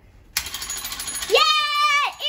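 Toy intruder alarm robot going off as the door is opened, its trigger set off by the door: a shrill, high-pitched electronic alarm that starts suddenly about a third of a second in and keeps sounding steadily. A child shouts "yeah" over it near the end.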